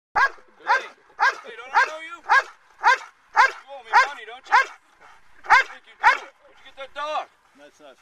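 Protection dog barking in a steady run of loud guard barks, about two a second, a dozen or so with a short break about five seconds in, aimed at a decoy in a bite suit.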